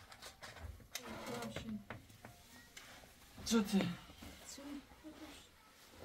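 Voices speaking in short phrases, with a few light knocks and clicks between them.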